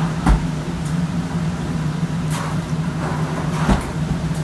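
A steady low hum, with two dull thumps: one just after the start and one near the end.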